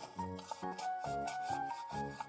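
Toothbrush scrubbing back and forth on the plastic teeth of a giant dental demonstration mouth, in quick repeated strokes, over soft background music with a simple melody.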